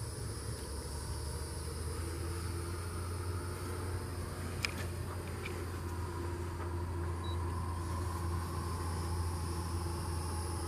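Steady low machine hum with a steady high insect drone above it, and one sharp click about halfway through.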